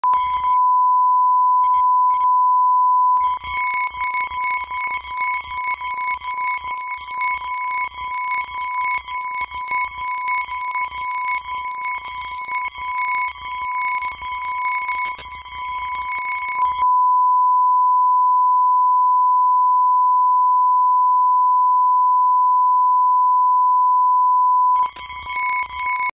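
A steady 1 kHz line-up test tone of the kind that goes with colour bars at the head of a videotape. Through much of the first two-thirds it is distorted and crackly with brief breaks. It runs clean from about two-thirds in, then breaks up again just before the end.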